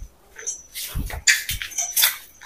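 A pet macaque giving a few short, soft calls, with a dull thump about a second in.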